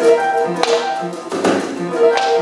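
Free-improvised jazz from piano and double bass: short, detached pitched notes, with two sharp percussive hits about a second apart.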